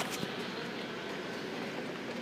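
Steady indoor background noise with no distinct event.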